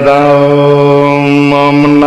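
A man's voice chanting into a microphone in a sung recitation, holding long, nearly level notes with a small change of pitch about a second and a half in.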